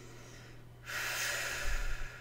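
A woman's deep breath through the nose or mouth: a rush of air starting about a second in and lasting about a second, ending in a low puff of air on the microphone.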